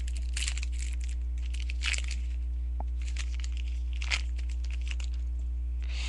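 A football trading-card pack wrapper being torn open and crinkled by hand in a few short crackly bursts, over a steady low electrical hum.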